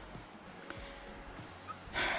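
Quiet open-air background: a faint steady hiss with a few soft ticks, and no distinct sound standing out.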